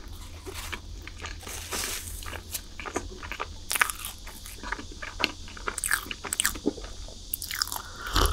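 Close-miked chewing of crunchy chocolate snacks: wet mouth sounds with scattered crunches and small clicks. Near the end a drink is lifted to the mouth and sipped from a cup.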